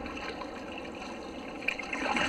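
Water lapping and trickling against a sea kayak's hull, a steady low wash with a small tick near the end.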